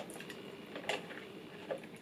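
Quiet sipping of a cold drink through a straw, with a couple of faint short slurps about a second in and near the end.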